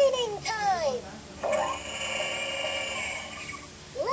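LeapFrog Color Mixer toy truck's electronic sounds through its small speaker: a short sung or spoken phrase, then a steady whirring sound effect lasting about two seconds.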